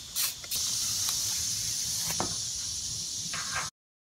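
An aerosol spray can hissing in one long, steady burst for about three seconds, which stops abruptly near the end.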